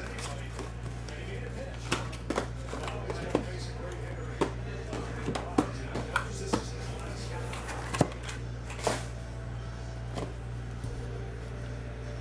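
Cardboard trading-card hobby boxes being handled and set down on a table: scattered light taps and knocks, the sharpest about two seconds in and again about eight seconds in, over a steady low hum.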